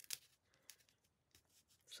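Near silence with a few faint, brief ticks and rustles of paper being handled: a small piece of patterned cardstock being slid under the edge of a larger sheet.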